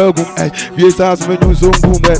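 A rapper's voice delivering a freestyle over an African drill beat, with sharp hi-hat ticks and deep bass; the bass drops out and comes back in about one and a half seconds in.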